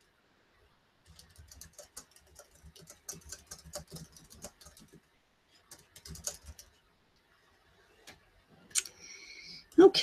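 Faint, irregular light clicking and tapping for about six seconds, then a sharp click and a brief high steady tone near the end.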